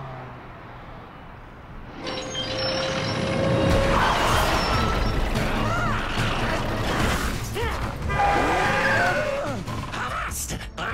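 Cartoon action sound effects with music: a low rumble, then from about two seconds in a loud run of crashing and vehicle noise as a robot smashes onto the street.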